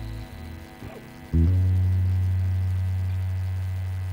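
A single deep, humming note from the live band, starting suddenly about a second and a half in and slowly dying away.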